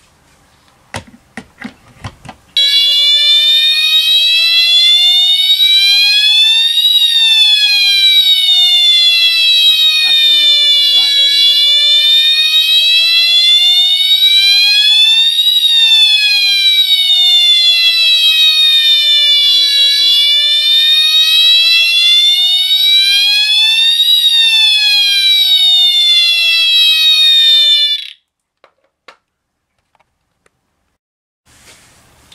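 Siemens UMMT-MCS multi-tone fire-alarm horn sounding its siren tone: a loud electronic wail that slowly rises and falls in pitch, about three full cycles of roughly eight seconds each, cutting off suddenly near the end. A few clicks come just before the tone starts.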